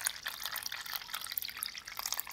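A thin stream of water poured into a small plastic tub already holding water, splashing and trickling steadily.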